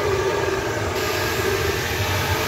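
Flow bench vacuum motors running steadily, drawing air through the number six runner of a Ford GT40 lower intake manifold at about 16 inches of depression and 230 CFM. It is a constant drone with rushing air, and the hiss gets brighter about a second in.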